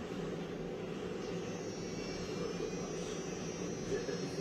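Laser marking machine running a color-marking job on a metal dog tag: a steady machine hum, with a thin high whine coming in about a second and a half in.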